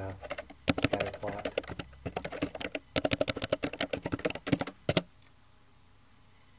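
Keys being typed on a computer keyboard in quick runs of strokes with short pauses between them. The typing stops about five seconds in.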